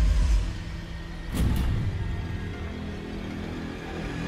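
Suspenseful dramatic background score: a deep low rumble at the start, then quieter held low notes, with one brief sharp accent about a second and a half in.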